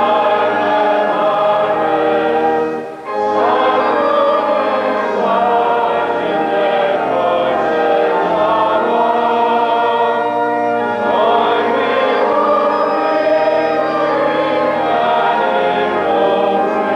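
A choir singing in sustained, held chords, briefly breaking off about three seconds in before going on.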